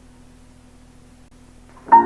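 A pause between tracks holding only a faint steady hum, then Ethiopian piano music starts suddenly and loudly with a full chord near the end.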